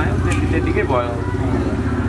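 Men talking, over a steady low engine hum.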